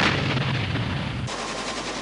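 Gunfire: one loud, sharp report at the very start, its rumble dying away over about a second into a quieter background.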